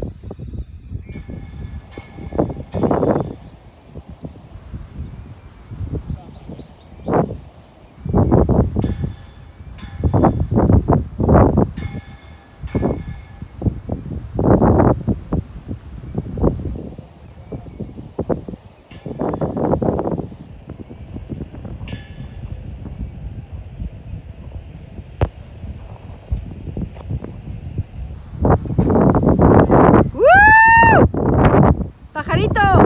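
Gusty wind buffeting the microphone in irregular loud rushes. A bird repeats a short, hooked chirp about once a second, clearest in the first two-thirds and fainter later.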